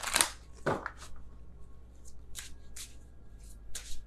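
A deck of oracle cards being shuffled by hand: several short papery swishes and slaps, the loudest right at the start.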